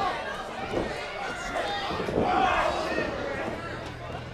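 Small live crowd shouting and calling out, with several separate voices rising and falling.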